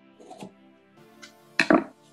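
Scissors cutting through a strip of brown paper: a faint snip shortly after the start, then a louder snip and paper crackle about one and a half seconds in as the strip comes free. Soft background music plays underneath.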